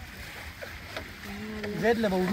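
Steady rushing noise of sugarcane juice boiling in a large open jaggery pan. About halfway through, a man's drawn-out vocal sound comes in, held and then rising in pitch near the end.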